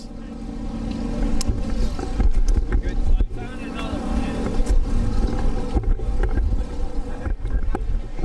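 Race truck engine running in the pits, a steady rumble that grows louder over the first two seconds.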